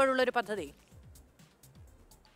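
A voice speaking breaks off about two-thirds of a second in, followed by a near-silent pause with only faint room tone.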